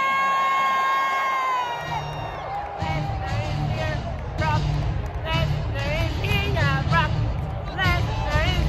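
A woman's long, high scream close to the microphone, held for about two seconds, over arena crowd noise. From about three seconds in, loud arena music with a heavy beat plays under crowd cheering and whoops.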